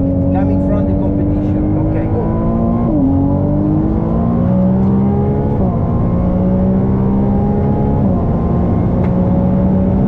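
Ferrari 296 GTB's twin-turbo V6 accelerating hard on track, its pitch climbing steadily in each gear and dropping sharply at three upshifts, about three, five and a half and eight seconds in.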